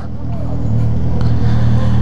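Motorcycle engine running steadily at low speed through a bare exhaust pipe, its muffler removed. It is loud, swelling a little after the start.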